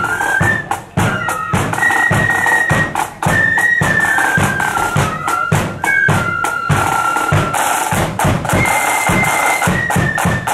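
Marching flute band playing a tune: flutes carry the melody over rapid side-drum rolls and the beat of a bass drum.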